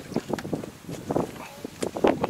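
Water running from a hose into a plastic measuring jug, splashing unevenly, with a few light knocks as the plastic jug is handled and lifted.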